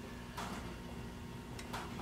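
A few faint, irregular clicks and rustles of photo prints being handled and shuffled, over a low steady background hum.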